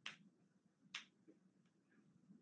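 Near silence broken by two short, faint, sharp clicks about a second apart.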